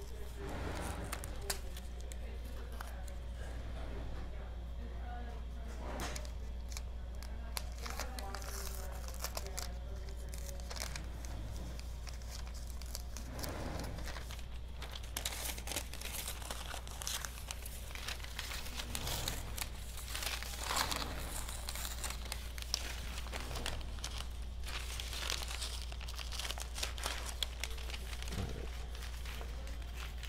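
Pattern paper rustling and crinkling as taped paper pattern strips are handled and pulled up off a large sheet, with irregular crackles and tearing of tape, busier in the second half. A low steady hum runs underneath.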